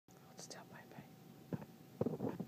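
A person whispering faintly, a few short hissy syllables, with a brief louder sound about one and a half seconds in.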